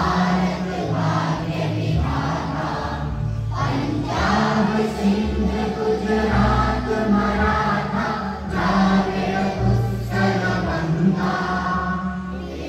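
Music with a group of voices singing in chorus over steady sustained low accompanying notes, with a short break about three and a half seconds in.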